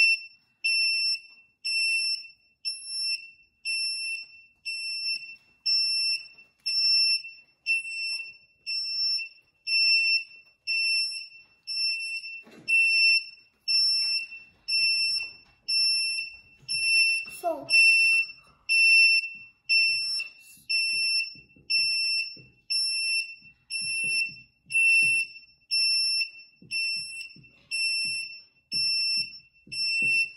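Buzzer on an MPatrol 1 Arduino learning kit beeping on and off at one steady high pitch, a little faster than once a second: the kit running a programmed fire-truck siren pattern.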